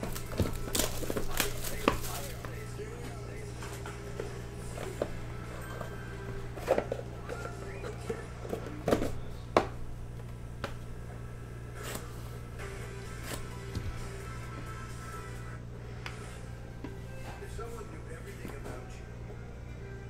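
Cardboard box being worked out of a tight-fitting slider sleeve by hand: scrapes, small knocks and thumps as it catches, with the loudest knocks in the first two seconds and around nine seconds in, then quieter handling.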